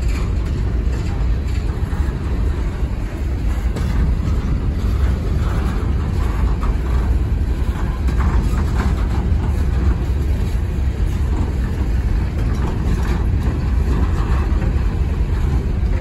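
Empty coal hopper cars of a freight train rolling past: a steady rumble of steel wheels on the rails, with occasional faint clicks.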